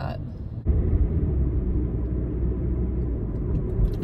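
Steady low rumble of a car being driven, heard from inside the cabin: engine and road noise. It jumps suddenly louder just under a second in and then holds steady.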